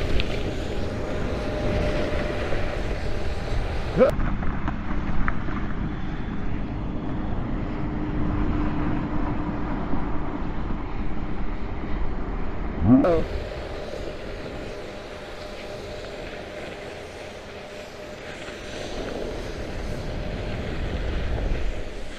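Steady rushing noise of riding down an icy slope on an on-board camera: wind on the microphone and the scrape of the runners over hard snow. It eases for a few seconds past the middle and builds again near the end, with a short cry of "oh" about thirteen seconds in.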